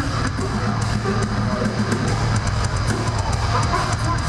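A metal band playing live and loud: distorted electric guitars and bass over a drum kit, with fast, regular cymbal and drum hits, several a second.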